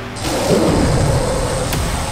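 Sound effect of a magic energy blast being charged and fired: a sudden swell with a steady high whine held throughout.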